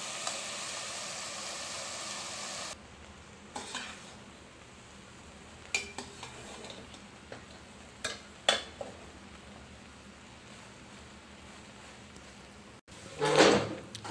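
Onion and vegetable masala sizzling steadily in an aluminium pan, cut off suddenly about three seconds in. Then a slotted steel spatula scrapes and knocks against the pan as bread cubes are stirred through, with a few sharp clinks, and near the end there is a louder clatter of a steel plate against the pan.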